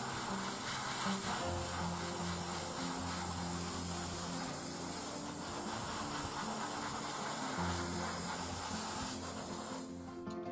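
Gravity-feed airbrush spraying paint with a steady hiss of air, cut off just before the end.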